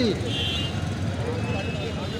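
Open-air vegetable market background: a steady low rumble, with the tail of a man's voice falling away at the very start and faint distant voices.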